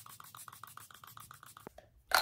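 Makeup setting spray misting from a pump bottle: a faint, rapid pulsing hiss that stops shortly before the end.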